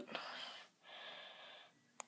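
Faint breathing close to the microphone: a soft breath out, then a second short breath about a second in.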